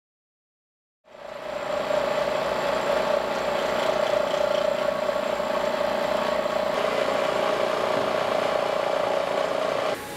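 Machine tool cutting metal: a steady, high whine over a running motor with a fast low pulsing underneath. It fades in after about a second of silence, holds level and cuts off abruptly at the end.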